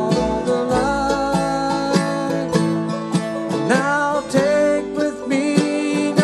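Bluegrass band playing live: acoustic guitar with other picked strings, under a lead line that slides between notes.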